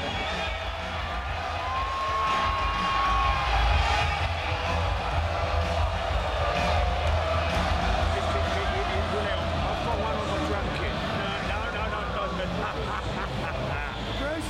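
A laugh, then a steady, dense mix of people talking and muffled music with a deep bass rumble, typical of a loud show heard from backstage.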